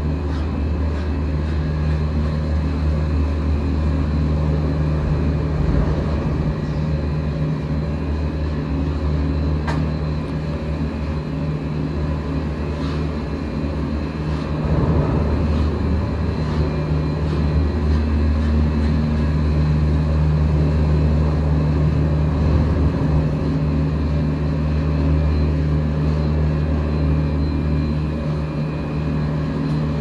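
Bartholet telemix lift station machinery running, a steady low mechanical hum with several held tones as chairs and gondola cabins travel through the terminal. It grows a little louder and rougher about halfway through.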